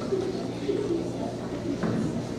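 Many children's voices at once, low and indistinct, over a steady low hum.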